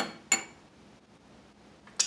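Metal fork set down on a white serving platter: two sharp clinks about a third of a second apart, with a brief high ring.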